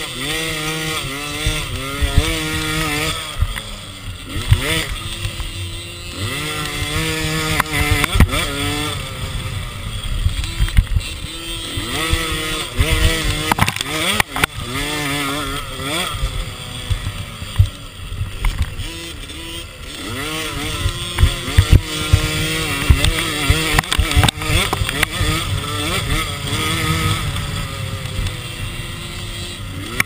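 Small two-stroke engine of a youth 50cc automatic motocross bike, revving up and down over and over as it is ridden hard around a dirt track. Sharp knocks from the bike hitting bumps cut through it again and again.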